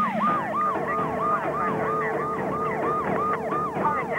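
Police siren wailing in a fast yelp, each cycle a quick falling sweep, about four a second.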